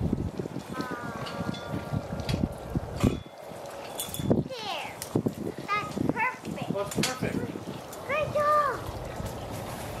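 Short unworded voice sounds, some high-pitched with rising and falling pitch, over scattered light knocks and shuffling as a metal garden arbor is handled and set in place.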